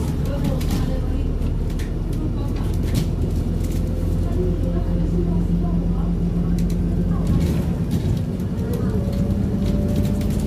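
Alexander Dennis Enviro400 diesel double-decker bus running under way, heard from inside the passenger saloon: a steady engine drone with a thin whine that comes in about four seconds in and again near the end.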